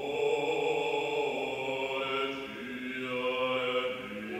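Mixed choir and orchestra coming in together on a loud held chord after a hush, sustained with the harmony shifting about halfway through.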